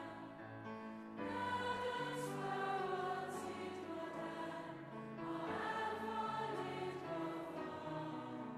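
A choir and a large crowd singing a slow song together in long, held phrases, with piano accompaniment; a new phrase begins just after a second in and another around five seconds in.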